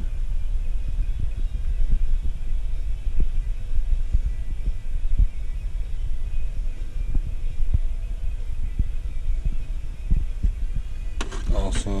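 A steady low rumble of handling noise on a hand-held camera microphone, with scattered light clicks throughout.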